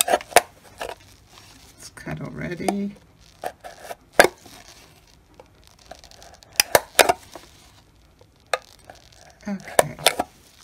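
An X-Acto craft knife cutting slits through the base of a plastic cup: scattered sharp clicks and cracks of the plastic as the blade pushes through, with a quick cluster about seven seconds in.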